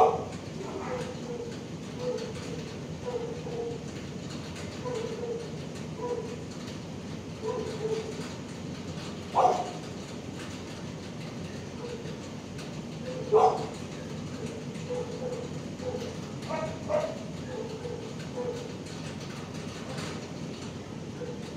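Dogs barking in a shelter kennel block over a steady background hum: a run of short, fairly quiet barks every half second to a second, with louder single barks at the very start, about nine and a half and thirteen and a half seconds in, and a couple near seventeen seconds.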